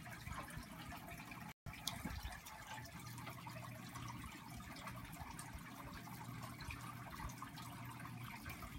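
Faint steady hiss with a low hum, scattered with small ticks, broken by a short dropout to total silence about a second and a half in.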